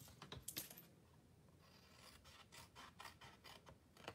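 Small paper snips cutting through cardstock: faint, short snips, with a quick run of them in the second half.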